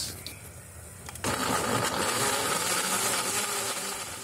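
Countertop blender switching on about a second in and running steadily, puréeing a thick green mixture.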